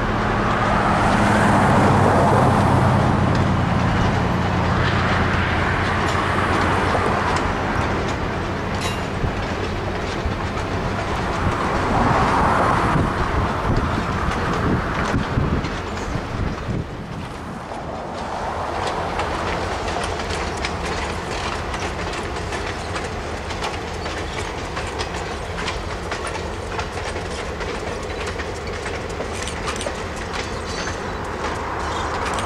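A diesel-hauled passenger train rolling past: wheels clicking over rail joints and a steady rail rumble, with a low diesel locomotive engine drone, strongest in the first few seconds.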